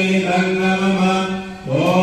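A man chanting Vedic fire-offering mantras in a steady, drawn-out monotone. He pauses briefly for breath about three-quarters of the way through, then slides back up onto the same note.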